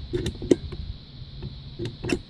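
Push-button pop-up sink drain stopper being pressed by hand: a few short sharp clicks, the loudest about half a second in.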